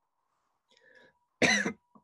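A man coughing once, a short loud cough about a second and a half in.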